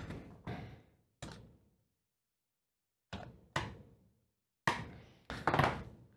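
Hardware being handled on a tabletop: about eight separate knocks and clacks of parts, screws and tools being picked up and set down, spread unevenly, each dying away quickly. There is a stretch of silence of over a second in the middle.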